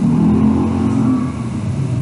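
A motor vehicle's engine running, its pitch drifting slightly.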